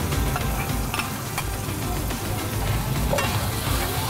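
Spice paste frying in a metal wok, sizzling as a white liquid is poured in and stirred with a metal ladle, with a few clicks of the ladle against the pan in the first second and a half.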